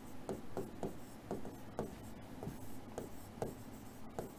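A pen writing on a board in short, quick strokes, about three a second and unevenly spaced.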